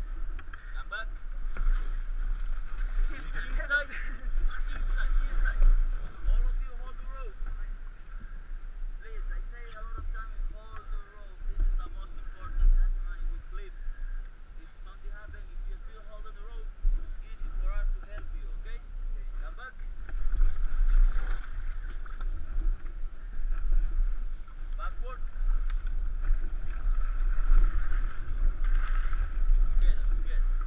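Wind rumbling on an action camera's microphone over river water splashing and lapping against an inflatable raft, with occasional knocks and splashes from paddles.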